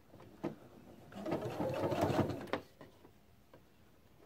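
Pfaff Quilt Expression 4.0 sewing machine topstitching in a short run of rapid, even needle strokes lasting about a second and a half, preceded by a single click.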